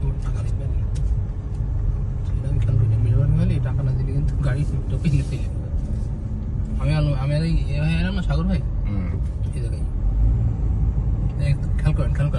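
Steady low rumble of a car heard from inside the cabin while driving, with people talking over it.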